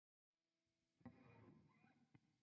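Near silence: a faint steady hum, then a soft click and a brief faint string sound from the electric guitar about a second in, before playing begins.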